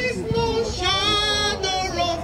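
A high female voice singing a slow song, holding long notes and gliding between them.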